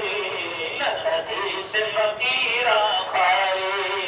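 A man singing a devotional ghazal over music, in long held phrases that bend in pitch.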